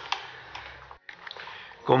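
A few light clicks over low room noise, with the sound cutting out briefly about halfway; a man's voice begins at the very end.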